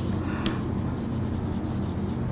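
Chalk writing on a blackboard: short scratching strokes, the clearest about half a second in, over a steady low room hum.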